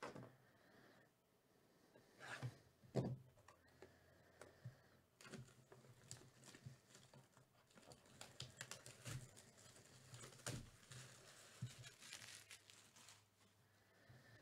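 Clear plastic shrink wrap being torn and peeled off a cardboard box of trading cards, faint crinkling and tearing. A couple of sharper rips come a few seconds in, and denser crinkling follows through the second half.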